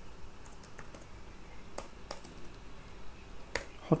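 A handful of separate keystrokes on a computer keyboard, sharp clicks spaced out with pauses between them.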